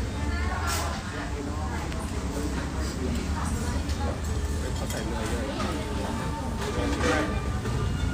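People talking over a steady low background rumble.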